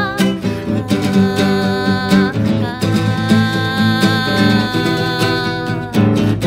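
Live acoustic song passage: a nylon-string acoustic guitar strummed in a steady rhythm, with long held melody notes over it.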